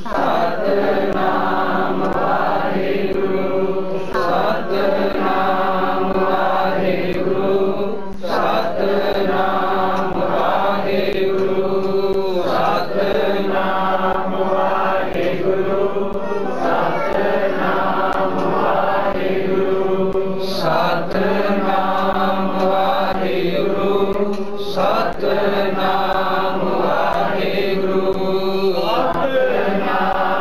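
Sikh congregation chanting simran together in unison, many voices repeating the same phrase over and over in a steady cycle, each phrase lasting about four seconds.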